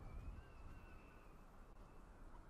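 Near silence: a faint low rumble, with a thin, faint high tone that drifts slightly in pitch for about a second.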